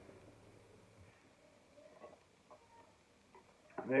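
A person drinking from a glass bottle: faint swallowing sounds and a few small clicks in an otherwise quiet room.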